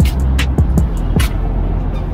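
Background music with a steady beat of low thumps and high ticks over a low bass rumble.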